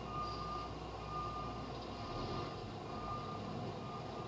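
Garbage truck's reversing alarm sounding three half-second beeps at one high pitch, over the steady low running of the truck's engine as it backs up.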